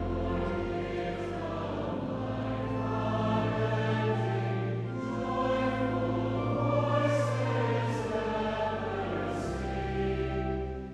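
Large mixed choir singing a hymn in full harmony, accompanied by pipe organ holding long, steady bass notes beneath the voices.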